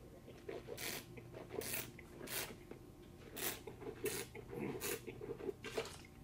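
A wine taster slurping a mouthful of red wine, drawing air through it in short airy slurps, about seven of them, to aerate it on the palate.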